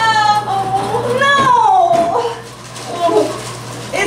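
A woman's exaggerated, high-pitched wailing cry of dismay: two long, drawn-out wails rising and falling in pitch, then softer broken vocal sounds.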